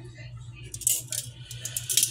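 Metal kitchen tongs clicking and clattering in the hand: a quick run of sharp metallic clicks starting about a second in.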